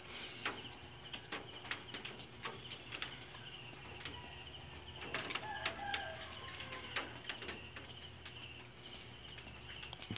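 Faint outdoor ambience: a steady high insect trill, like crickets, with scattered small clicks and a few faint bird chirps.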